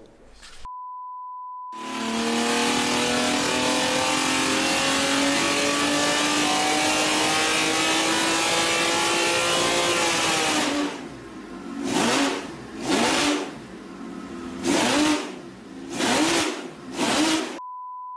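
A short steady beep, then a carburetted Jaguar race engine on a test stand held at high revs for about nine seconds, its pitch creeping slowly upward. It drops back and is blipped five times, and a second beep comes at the very end.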